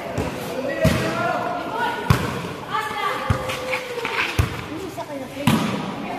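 A volleyball bounced on a concrete court floor about once a second, five thuds in all, over people's chatter and calls.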